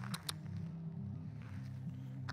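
Soft background music of low, steady held notes that shift in pitch, with a few faint clicks about a quarter of a second in.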